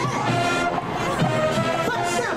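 High school marching band playing in full: brass holding sustained chords over the drum line.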